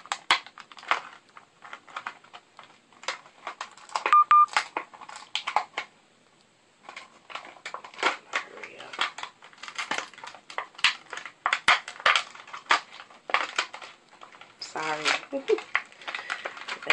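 Stiff plastic packaging of a pack of false eyelashes being pried and worked open by hand: irregular clicks and crackles of the plastic, with a short squeak about four seconds in, the pack proving hard to open.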